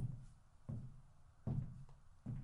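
Three dull, low thumps at an even pace, about one every three-quarters of a second. The first is the loudest.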